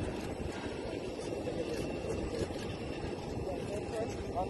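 Steady rumbling noise of aircraft and vehicles running on an airport apron, with people's voices mixed in, more plainly near the end.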